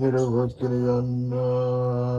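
A low voice intoning long, steady chant-like notes: a short wavering note, a brief break about half a second in, then one long held note.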